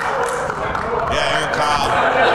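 A group of men talking and calling out over one another, with a few hand claps mixed in.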